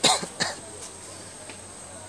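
A person coughing twice in quick succession close to the microphone, the second cough about half a second after the first.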